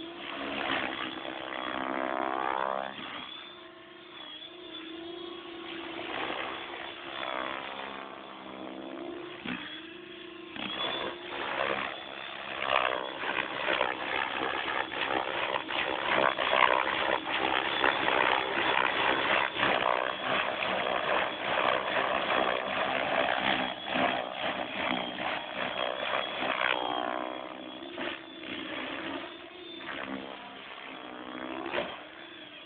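Compass 6HV RC helicopter flying 3D manoeuvres low over the water: a steady rotor and drive whine whose pitch glides up and down as the helicopter passes and changes head speed, louder and rougher through the middle stretch.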